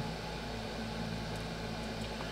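Steady low hum and hiss of background room noise, unchanging throughout.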